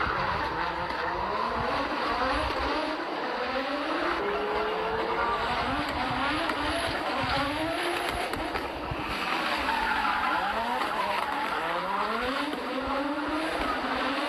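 Audi Sport Quattro rally car's turbocharged five-cylinder engine at full throttle, its pitch climbing again and again as it accelerates hard through the gears. It eases briefly about two-thirds of the way through, then revs up once more.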